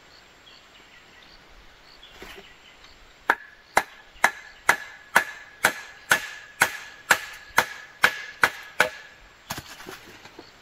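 Machete chopping into a green bamboo pole: about thirteen sharp blows, roughly two a second, each with a short ringing ping, beginning about three seconds in, then two lighter taps near the end.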